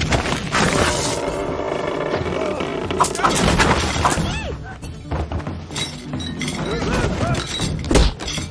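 Film fight-scene soundtrack: action music under hits and thuds, with dishes shattering near the end as a man is thrown onto a banquet table.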